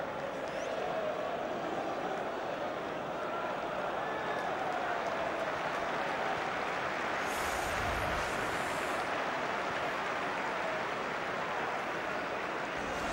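Football stadium crowd noise: a steady din of many voices from the stands, with a brief rustle and low thud about eight seconds in.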